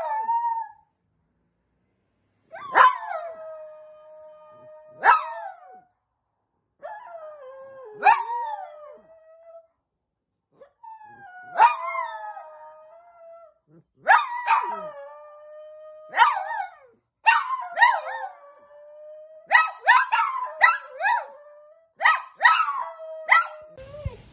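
A small dog howling in a run of short howls, each starting with a sharp yelp and settling into a held note. There are silent gaps between the early howls, and in the second half they come faster, about one a second.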